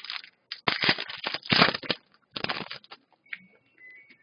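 Trading-card pack wrapper crinkling and tearing as a pack is opened by hand, in a run of bursts lasting about two seconds, followed by a few faint ticks of cards being handled.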